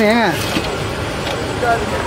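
A man's voice calls out briefly, then a steady low running noise carries on: the water pump draining the puddle.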